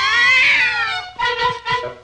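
A cartoon cat's long yowl that rises and then falls in pitch, followed by a few short, steady-pitched notes.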